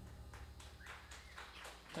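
Faint low hum from the stage amplifiers after the song has ended, with a run of faint, sharp clicks scattered through it.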